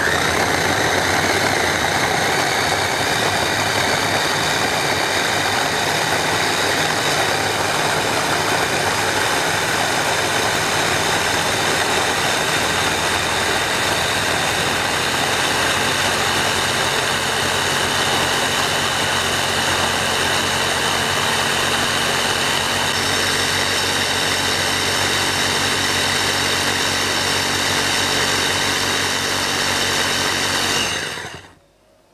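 Small electric bowl chopper's motor running steadily under load, its blades blending chillies, garlic and stock into a smooth liquid purée.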